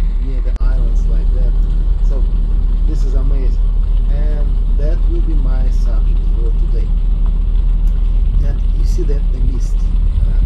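Steady low drone of a boat's engine under way, with people's voices talking over it at intervals.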